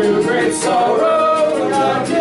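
Congregation singing a hymn with acoustic guitar accompaniment, voices held on long sung notes that glide between pitches.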